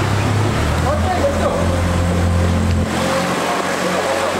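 A boat's engine running with a low, steady hum that grows stronger about half a second in and drops back sharply near three seconds in, as the throttle eases off. People talk in the background.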